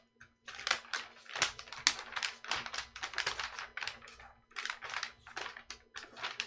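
Graphite pencil scratching across paper in quick, rough sketching strokes, several a second, with the paper sheets rustling as they are handled.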